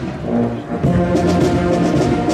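Brass marching band playing as it marches: held brass chords that swell louder just under a second in.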